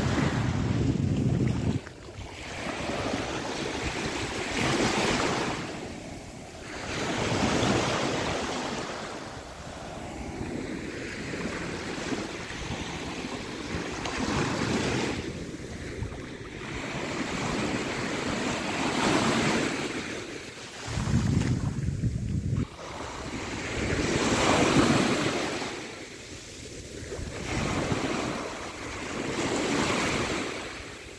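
Small sea waves breaking and washing up onto a sandy beach, the surf swelling and fading every few seconds. Wind buffets the microphone near the start and again about two-thirds of the way through.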